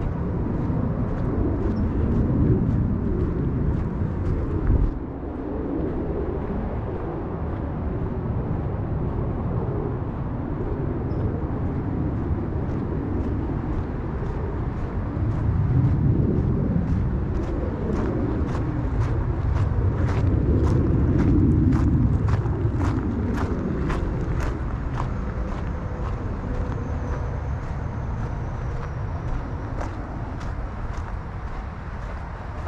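Steady rumble of road traffic going by, swelling and fading as vehicles pass. Through the second half, footsteps crunch on the trail at about two a second.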